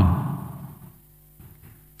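The tail of a man's spoken word dying away in a large, reverberant church, fading over about a second into near silence.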